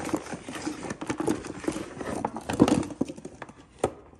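String-light bulbs clicking and knocking against each other, with the cable rattling, as they are handled in a cardboard box. Irregular knocks throughout, with a louder knock about two and a half seconds in and another near the end.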